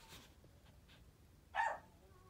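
A single short, high-pitched yip from a small dog about one and a half seconds in, against otherwise quiet room tone.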